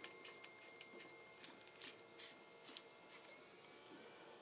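Near silence: room tone with a few faint, scattered small clicks from the welding gun and its cable being handled.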